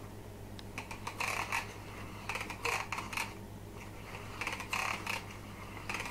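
A cranked paper automaton's gear mechanism, with a thin plastic strip flicking against a gear wheel to make the tiger's sound. It gives three bursts of quick rasping clicks about two seconds apart as the handle turns.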